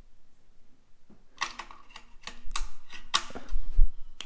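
Two AA NiMH cells being pushed into the spring-loaded slots of a Nitecore UMS4 battery charger: a run of sharp clicks and knocks, plastic and metal, with a few dull thuds on the table, starting about a second in and loudest in the second half.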